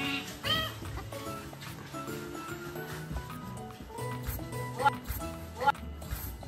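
Asian small-clawed otter giving short, high, arching chirps: one about half a second in and two more near the end, over background music.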